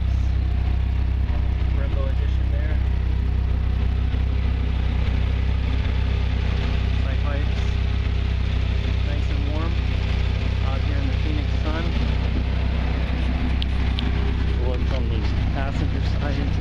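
Dodge Viper SRT-10's 8.3-litre V10 idling steadily with a deep, even tone.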